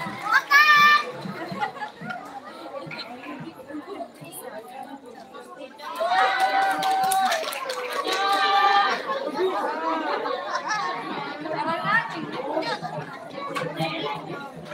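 Audience chatter with children's voices. There is a short high call just under a second in, and two long held shouts at about six and eight seconds.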